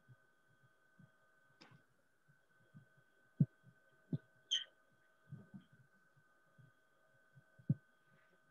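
Faint, irregular taps and knocks of a marker writing on a whiteboard, with a short squeak about halfway through, over a steady high electrical whine.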